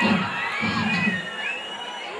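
Concert audience cheering and shouting with high whoops at the end of a song, dying down over the two seconds.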